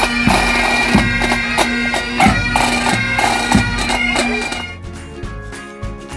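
Pipe band playing: bagpipes over their steady drone, with a bass drum beating about every two-thirds of a second. A little past halfway it gives way to quieter, different music.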